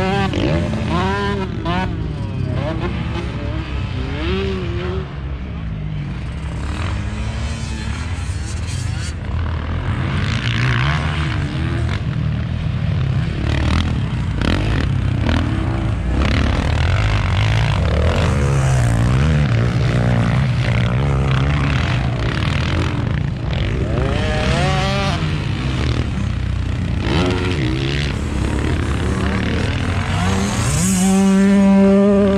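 Several off-road engines, quad bikes and motocross bikes, revving on a dirt track: overlapping engine notes climb and drop in pitch as the riders throttle on and off around the circuit.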